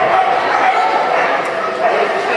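A dog yipping and whining in high, drawn-out calls, over people's voices in the background.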